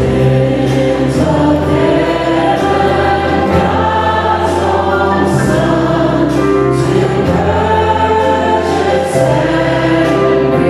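Live church worship song: a worship team and choir singing together over piano and guitars, with a bass line that shifts note every second or two.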